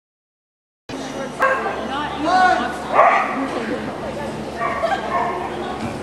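A dog barking and yipping, with people's voices behind it, starting abruptly about a second in.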